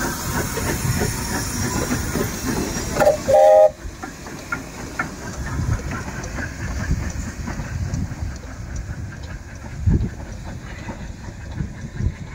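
Beyer-Garratt NG/G16 narrow-gauge steam locomotive moving off: steam hiss and chuffing, then a short, loud whistle blast about three seconds in. After it the hiss stops and the locomotive's quieter rumble and clanking on the rails carry on as it draws away, with a single heavy clunk near the end.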